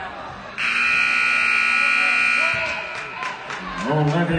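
Gymnasium scoreboard buzzer sounding once, a loud steady electronic tone that starts suddenly and holds for about two seconds before cutting off, over the murmur of the crowd.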